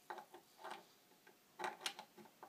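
Faint clicks and ticks from a hand screwdriver snugging a neck screw through a Stratocaster's metal neck plate into the wooden neck: a handful of small ticks, the two sharpest close together near the end.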